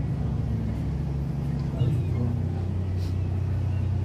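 A steady low mechanical drone, like an engine or motor running, that shifts to a slightly different pitch about two seconds in.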